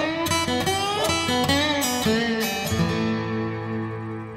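Background music on acoustic guitar: a run of quickly picked notes, settling into held, ringing notes for the last second or so.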